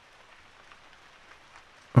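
Steady rain falling, an even hiss of drops with no other sound.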